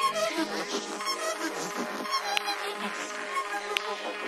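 Darkpsy track in a breakdown with no kick drum or bass: layered electronic synth tones and fluttering textures held over several seconds.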